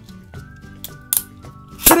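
Background music with a few sharp plastic clicks as Beyblade tops are fitted onto their launchers. Near the end comes a loud sudden clatter as a top is launched and hits the red plastic stadium.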